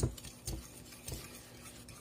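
A metal fork stirring raw eggs and sugar in a ceramic mixing bowl, clinking against the bowl a few times.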